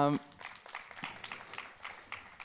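Audience applauding lightly, a dense patter of hand claps.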